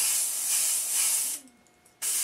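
Aerosol can of truck bed coating spraying in a steady hiss that cuts off about three-quarters of the way through.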